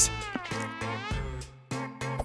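A buzzing, pitched tone that dips and then rises in pitch for about a second, over background music.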